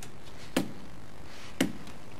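Two sharp taps about a second apart, over a faint steady hiss.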